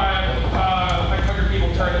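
Speech only: people talking, with a steady low hum underneath.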